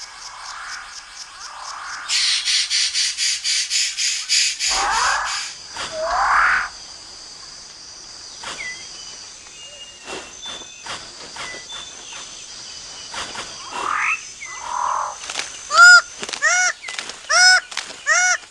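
Tropical rainforest animal sounds: a fast pulsing trill of about five pulses a second, two rising sweeps, scattered clicks, then near the end a run of loud, evenly spaced calls, each a short arching note.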